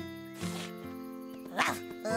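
Soft background score of held notes, with a short breathy swish about half a second in and a brief high vocal sound near the end.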